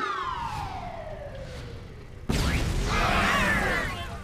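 Cartoon sound effects: a pitched whistle-like tone that slides steadily down over about two seconds, then a sudden loud boom a little past halfway that carries on with swirling, wavering tones.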